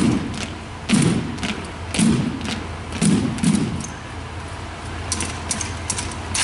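Rifle drill squad's rifles and boots striking the gym floor in unison, about once a second, each thud topped by a sharp click. The thuds stop about halfway through, and a few lighter clicks follow near the end as the rifles are spun.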